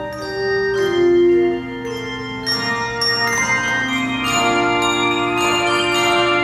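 Handbell choir ringing a slow chordal piece: new chords struck every second or so, each left to ring over the next.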